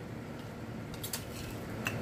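A few faint clicks and clinks from a drinking glass while a man drinks from it: a small cluster about a second in and one more near the end, over low room noise.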